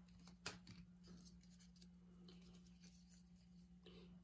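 Near silence: quiet room tone with a faint steady low hum and a few small ticks and rustles of plastic paint cups being handled, with one sharper click about half a second in.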